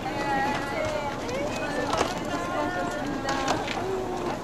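Several people talking and calling out over each other, with a few sharp knocks from suitcases being handled, the loudest about two seconds in.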